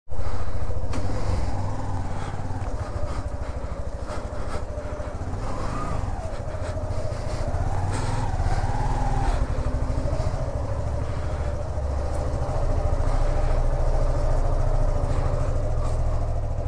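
Motorcycle engine running, with a steady, deep rumble and engine pitch that rises and falls a little around the middle.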